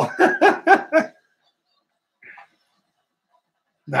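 A man laughing: a quick run of about five short bursts lasting about a second.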